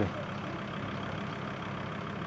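Volkswagen LT minibus engine idling with a steady, low, even hum.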